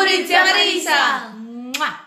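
A woman and children cheering and calling out together over hand clapping, with a quick rising whoop near the end.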